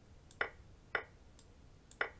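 Three short clacks, the second about half a second after the first and the third a second later: the online chess board's move sounds as pieces are captured on e5. Fainter, thin clicks fall between them.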